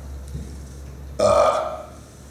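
A man's short, burp-like throaty grunt, one sound of about half a second a little over a second in.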